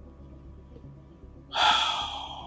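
A man drawing a quick breath in close to the microphone, starting suddenly about one and a half seconds in, after a stretch of quiet room hum.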